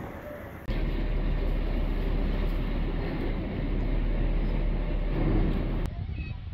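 Steady rumble and rushing noise of a boat under way, a deep engine drone mixed with wind across the microphone. It starts abruptly about a second in and cuts off just before the end.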